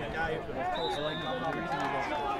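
Background chatter: several people's voices overlapping, none close enough to make out words.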